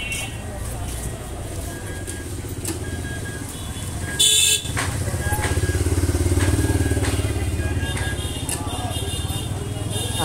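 Background traffic noise: a low vehicle engine rumble that swells from about five seconds in and then eases off, with a short, loud burst just after four seconds.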